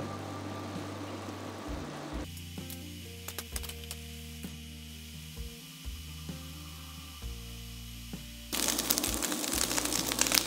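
Minced beef frying in a wok. For about the first two seconds there is a soft bubbling hiss of water and oil boiling off the meat; then quiet background music with sustained notes. About a second and a half before the end a louder sizzle starts suddenly, the sound of the beef frying once the liquid has dried up.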